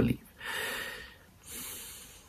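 A young man breathing audibly through his nose between sentences: two breaths, one about half a second in and a higher, hissier one about a second and a half in.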